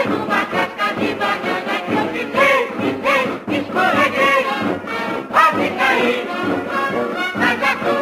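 Music: a woman singing lead in a lively carnival marchinha, with a mixed chorus of backing singers and a band accompanying her.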